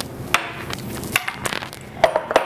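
Four short knocks and clunks of kitchen handling: a spice jar set down on the granite countertop and a glass baking dish moved on a wooden cutting board. The sharpest knock comes about a third of a second in.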